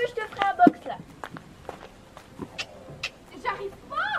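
Footsteps on gravel with a scatter of light clicks and knocks, between brief snatches of voice in the first second and near the end.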